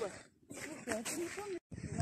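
Faint voices talking at a distance over a light steady hiss, cut off by a brief dropout near the end.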